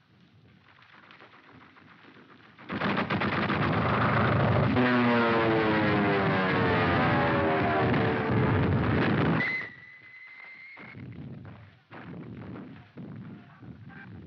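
Rapid machine-gun fire starts suddenly over a biplane's engine, whose pitch falls steadily for several seconds as in a dive. The sound cuts off abruptly and is followed by quieter scattered bangs.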